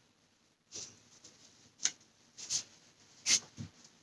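A person sniffing in short bursts through the nose, about five times, smelling perfume on a paper tester strip.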